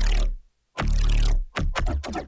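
Synthesized neuro-style bassline loop playing solo: heavy sub-bass notes with a gritty, buzzing upper texture, a brief gap about half a second in, then quicker choppy notes near the end. Its shrill upper-mid edge is being tamed by a multiband compressor.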